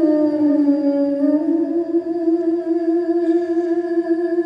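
Female singer holding one long sung note into a microphone, which sags slightly in pitch early on, rises back about a second and a half in and is then held steady.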